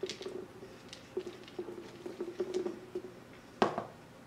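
Dry dog kibble rattling and pattering as a plastic measuring cup and a soft rubber Snoop food toy are handled together, with scattered small clicks. Near the end comes one louder sharp knock, as of the cup being set down on the counter.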